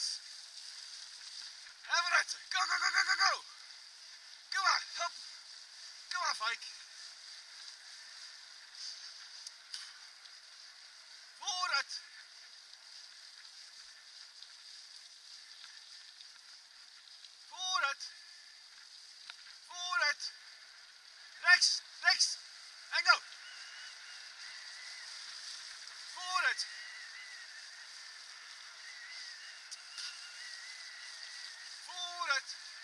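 Steady rushing of a bicycle ride on a forest trail, broken about a dozen times by short pitched calls that fall in pitch, several in a quick run a little past the middle.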